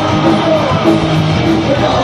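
Rock band playing loud live, with guitar prominent.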